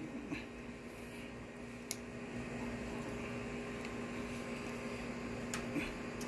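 A steady, low machine hum, like a fan or compressor running, with a sharp click about two seconds in and another light click near the end.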